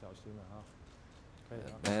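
Speech only: a man's voice, faint at first and then louder near the end.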